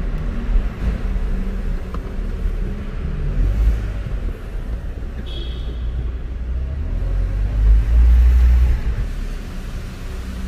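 A car driving slowly through an underground car park: a low engine and tyre rumble that swells twice, with a brief high squeak a little past the middle.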